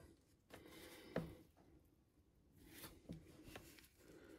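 Near silence with faint handling of a plastic action figure: one soft click about a second in, and a few fainter taps near the end.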